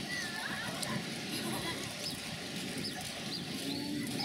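Faint background ambience of distant voices, with a few short high chirps in the second half. There is no distinct cutting sound from the knife going through the fruit rind.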